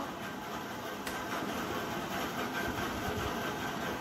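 Steady low background rumble and room noise, with one faint click about a second in.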